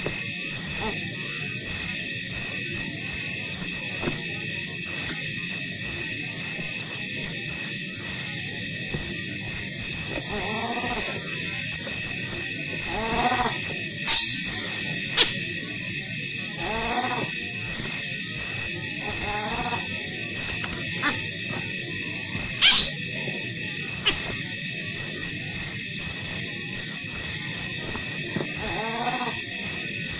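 A series of drawn-out animal calls that rise and fall in pitch, over a steady high-pitched drone. A few sharp clicks come about halfway through.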